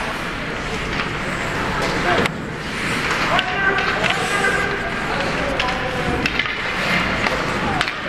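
Ice hockey rink during play: spectators' voices calling out over the scrape of skates on the ice, with a few sharp clacks of sticks and puck.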